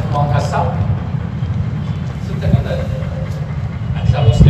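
A man's voice speaking in short phrases, over a steady, heavy low rumble.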